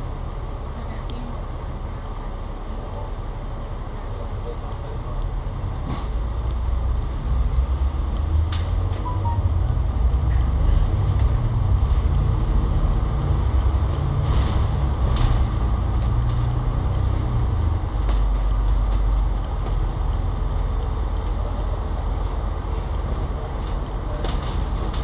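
Double-decker bus's Cummins L9 six-cylinder diesel engine heard from inside on the upper deck as the bus pulls away from a junction. The low rumble grows louder about six seconds in as it accelerates through the turn, then eases slightly near the end.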